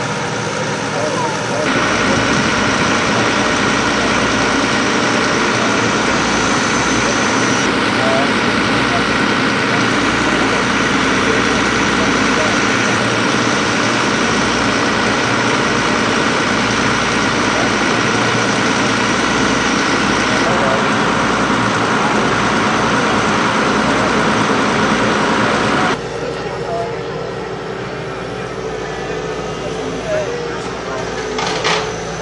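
Diesel engine of a Volvo EW200 wheeled excavator running steadily. The sound drops noticeably near the end.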